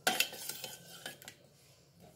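Steel spoon scraping and clinking against a stainless steel pot while stirring jaggery into hot water to dissolve it. A loud scrape at the start, then lighter clinks that stop about a second and a half in.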